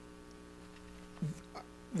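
Steady electrical hum, several constant tones at once, in the microphone and recording system, with a brief vocal sound a little over a second in.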